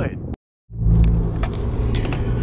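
After a brief gap of silence, a steady low drone starts inside the cabin of a moving Lexus IS350: its 3.5-litre V6 cruising through a new aftermarket axle-back exhaust.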